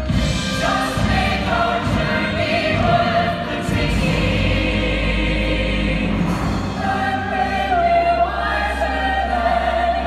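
Musical theatre chorus singing the show's finale in full ensemble, holding long notes.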